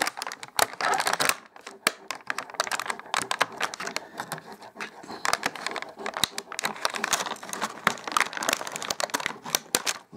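Clear plastic packaging crinkling and crackling as it is handled, with sharp snips of small scissors cutting through the plastic ties that hold the toy in place.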